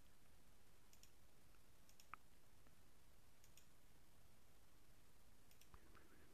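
Near silence: faint room tone with a few soft, scattered clicks.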